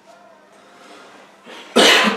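A man coughing once, sharply and loudly, near the end, behind his hand.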